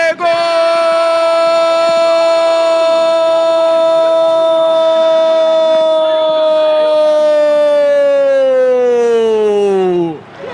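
A Brazilian Portuguese football commentator's long drawn-out goal shout, one high note held for about ten seconds. Its pitch sags over the last two seconds before it breaks off.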